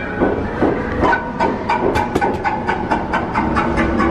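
Haunted-house soundtrack: a few held eerie tones under a rapid run of sharp clicks and knocks, about four or five a second, over a low rumble.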